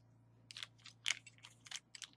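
Small clear plastic jewelry bag crinkling as it is unfolded by hand, in a handful of short crackles, loudest about a second in.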